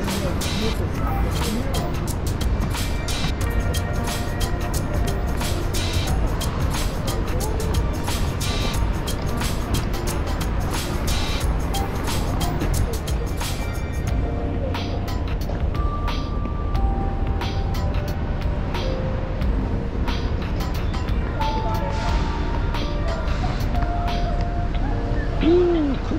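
City street ambience: a steady low rumble of road traffic, with faint music and scattered ticks in the first half.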